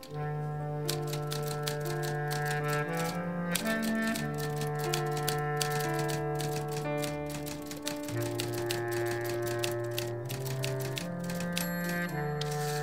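Manual typewriter keys clattering in quick runs of keystrokes, over a slow, low melody of long held notes from a bass clarinet.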